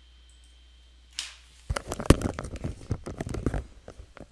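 Irregular clicks, taps and rustling close to the microphone, starting about a second and a half in after a brief rustle; before that only a faint low hum.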